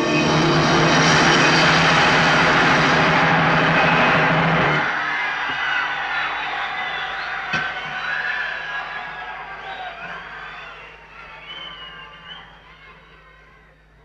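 A live band's final sustained chord rings out and cuts off about five seconds in, giving way to audience cheering with high calls gliding up and down, which fades out near the end.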